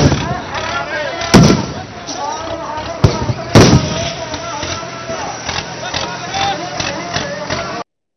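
Tear gas shells going off: four loud, sharp bangs within the first four seconds, over a crowd of men shouting.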